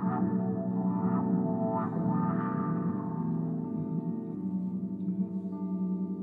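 Ambient music for violin and electronics: bowed violin over layered, sustained drone tones, with a few sharper note attacks in the first couple of seconds.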